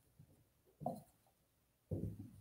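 Paint-covered brayer on a yardstick handle rolling over wet paint on paper: a faint rubbing sound, with a short louder stroke about a second in and another starting at the very end.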